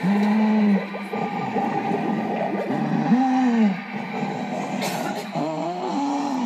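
Three drawn-out, wordless moaning calls, each rising and then falling in pitch, over a steady background hiss.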